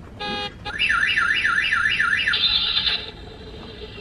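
Electronic sound effects from a battery-powered bulldog monster-truck toy's small speaker: a short beep, then a warbling siren rising and falling about three times a second, ending in a brief hissy blare.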